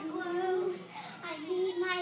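A child singing two long held notes at about the same pitch, without clear words, one near the start and another from about halfway through.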